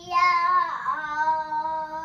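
A young girl singing, holding two long notes, the second a little lower than the first.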